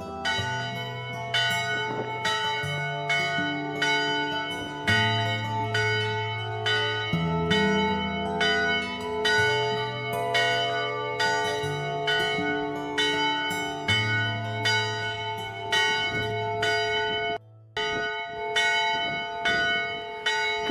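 A single church bell on a post, rung by hand with a rope, tolling in a steady repeated rhythm of roughly one stroke a second, each stroke ringing on. There is a brief break near the end.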